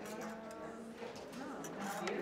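Indistinct human voices, with one voice holding a steady pitched tone for about a second early on.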